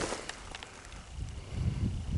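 Footsteps rustling and crunching on dry crop stubble, with low wind rumble on the microphone building near the end.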